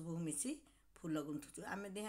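A woman speaking, with a short pause partway through.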